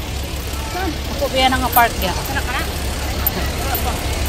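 Voices talking, with a steady low rumble underneath.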